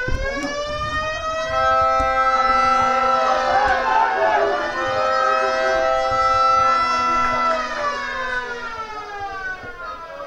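A siren winds up in pitch, holds several steady tones at once for about six seconds, then winds down near the end.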